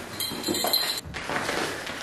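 Rustling and crinkling of a padded paper mailer and its packaging as it is picked up and handled, loudest in the first second.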